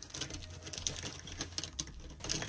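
Plastic pens and markers clicking and rattling against each other as a hand rummages through a fabric pencil pouch: a run of small, irregular clicks.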